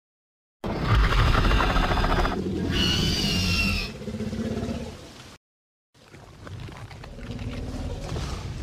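Monster-movie dinosaur roar sound effect: a loud, deep roar with a high screech in the middle, lasting about four seconds and dying away. After a brief silence, a quieter sound starts about six seconds in.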